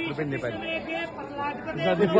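A man's voice reciting in short, level-pitched phrases in the manner of a chant, with the chatter of other voices underneath.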